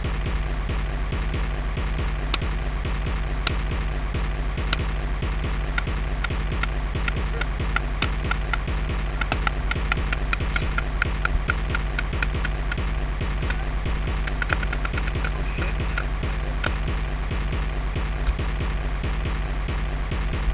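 A steady low hum with music, under a scatter of sharp pops from paintball markers firing across the field. The pops come thickest in quick runs around the middle.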